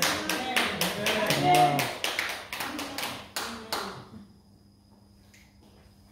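Rhythmic hand clapping, about four claps a second, mixed with voices, stopping about four seconds in. A faint steady hum remains.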